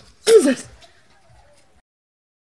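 A man's short, loud startled shout, about half a second long with a pitch that rises and falls, a quarter second in. The sound then cuts off to silence near the end.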